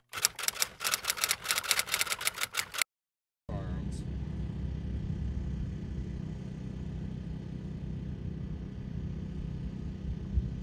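Typewriter sound effect: a quick, even run of key clicks, about seven a second, stopping abruptly a little under three seconds in. After half a second of silence, a steady low outdoor rumble sets in and runs on.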